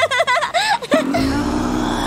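A woman laughing in quick, high bursts. About a second in this gives way to a steady low rumbling drone with a held tone running through it.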